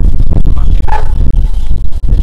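A dog barks once, briefly, about a second in, over a steady low rumble.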